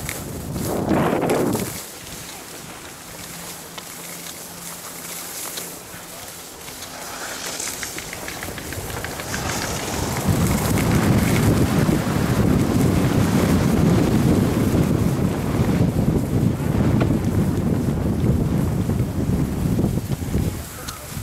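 Wind rushing over the microphone together with skis scraping and running over packed snow on a downhill run. A short loud gust about a second in, quieter for several seconds, then louder and steady from about halfway on.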